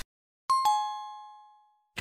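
Two-note chime sound effect: a higher ding and then a slightly lower one struck in quick succession about half a second in, both ringing and fading out over about a second.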